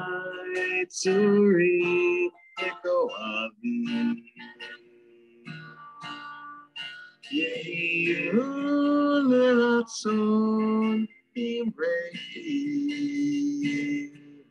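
A voice singing a Hebrew prayer melody to acoustic guitar accompaniment, in sung phrases with held notes, softer for a few seconds in the middle.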